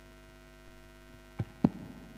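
Steady electrical mains hum from a stage sound system. About a second and a half in, two sharp thumps a quarter of a second apart come through it, the second louder, typical of a handled microphone or a guitar being plugged in.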